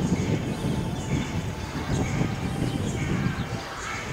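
Birds calling, short high calls repeating about twice a second, over a steady low rumbling background.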